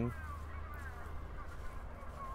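Faint bird calls, several short wavering calls in a row, over a steady low rumble.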